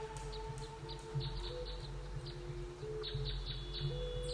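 A WMS online slot game's jungle ambience: short bird chirps scattered throughout and bunching together near the end, over soft held music tones that shift in pitch now and then.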